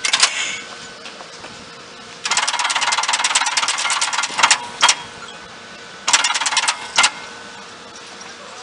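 Underfloor control gear of an Ichibata Electric Railway 3000 series electric train operating, its bank of contactors switching in and out: a rapid run of clacks for about two seconds, then single sharp clacks and a short burst of clacks near the end, over a faint steady hum.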